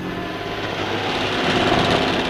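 Heavy construction machinery: a steady rushing mechanical noise that grows louder toward the end.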